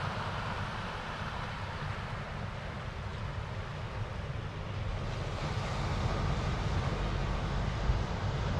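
Wind buffeting the camera microphone over a steady wash of surf on a rocky shore, growing a little louder about five seconds in.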